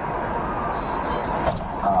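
Steady street and vehicle noise from a stopped patrol car with its rear door open, broken just under a second in by two short, high-pitched electronic beeps in quick succession, and a sharp click a little later.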